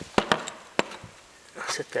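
Screwdrivers and hand tools being put back into a moulded plastic tool case: three sharp clacks within the first second, then light handling.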